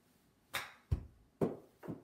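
A chip shot with a 58-degree lob wedge: a crisp club-on-ball strike off a hitting mat about half a second in. It is followed by a deeper thud and two more short knocks, which fit the ball hitting the simulator's impact screen and dropping to the floor.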